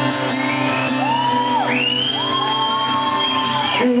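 Acoustic and electric guitars playing a song's intro, with audience members whooping and shouting over it in long high cries that rise and hold. A woman's singing voice comes in right at the end.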